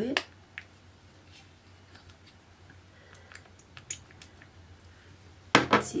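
Faint scattered clicks and ticks of a small plastic pump bottle of face oil being handled and pressed to dispense oil onto the back of a hand.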